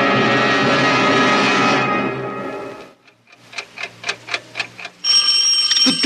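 Radio-drama sound effects: an orchestral music bridge fades out over the first three seconds. Then a clock ticks, about four ticks a second, the ticking of the time bomb's clock. About five seconds in, a doorbell starts ringing sharply.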